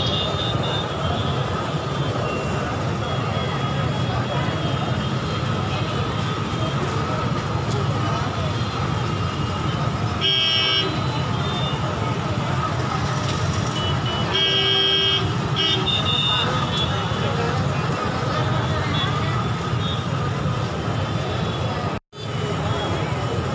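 Dense street hubbub of a packed crowd and slow traffic, with many voices at once. Vehicle horns sound briefly about ten seconds in, then again for a second or two a few seconds later.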